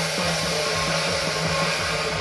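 Temple-procession percussion: a fast, steady drumbeat under continuous clashing and ringing of large hand cymbals, accompanying a Guan Jiang Shou performance.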